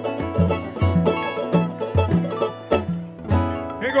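Instrumental samba-pagode passage: a samba banjo strummed over pandeiro and acoustic guitar, with a steady low beat about two and a half times a second.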